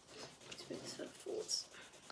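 Pencil scratching on sketchbook paper in a run of short strokes as it colours in, with soft voices murmuring partway through.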